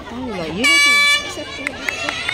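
Air horn sounding one short, steady blast of about half a second: the starting signal for a relay race, as the crouched runners set off.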